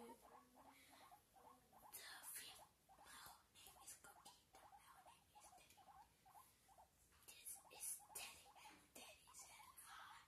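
Faint, rapid clicking and crackling mouth sounds made close to an earphone microphone, ASMR style.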